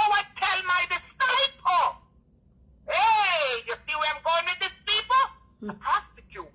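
Speech only: a person talking, with a pause of about a second near the middle.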